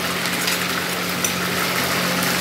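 Dough deep-frying in hot oil in a kadhai, a steady sizzle with no pauses, over a steady low hum.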